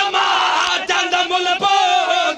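A man chanting in long, wavering notes through a microphone and loudspeakers, with a crowd of voices shouting along.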